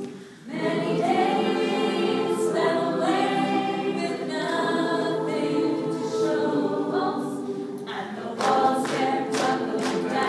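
A roomful of people singing a cappella in parts: held 'ooh' chords underneath with a sung tune over them. The singing dips briefly just after the start, then carries on, and from about eight seconds in sung words with sharp 's' sounds come through.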